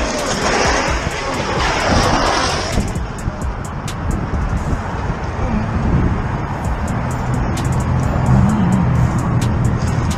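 Motorcycle crash heard from a camera on the bike: a loud rush of scraping noise for about three seconds as the camera tumbles along the road. Then a quieter low hum, with a music track underneath.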